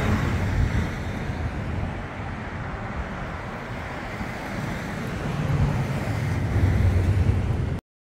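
Traffic on a town street: steady road noise from vehicles, easing in the middle and growing louder again in the second half as a vehicle passes, then cutting off suddenly just before the end.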